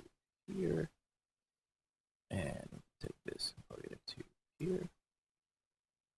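A man's voice making several short wordless sounds, hums or grunts, with dead silence between them.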